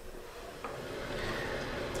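Faint steady background hiss of room tone, slowly growing a little louder, with a single faint click about two-thirds of a second in.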